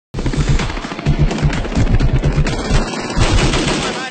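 Rapid automatic gunfire, a fast run of shots like a machine gun firing continuously, with a brief break near three seconds.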